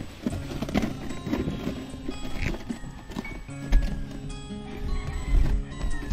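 A scrubbing pad rubbing back and forth over a plastic chair seat in quick repeated strokes, over background music.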